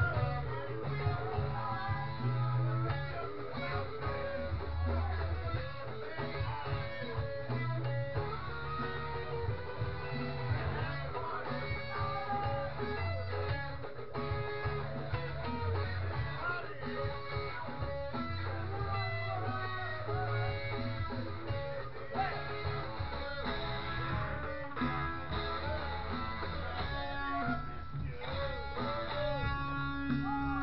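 Electric guitar being played without a break: a busy melodic line over sustained low bass notes that change every second or two.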